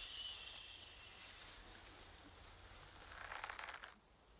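Faint outdoor ambience of a grassy field, with a thin insect-like high hiss in the first second and a soft rustle about three seconds in.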